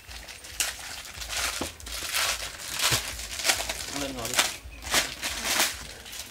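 Irregular rustling and crinkling: a string of short scratchy noises, with a brief faint voice about four seconds in.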